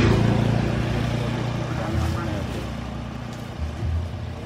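A motor vehicle's engine passing close by: loudest at the start, then fading over the next few seconds. Under it, a plastic tarp rustles as rice grain is tipped off it into a plastic bag.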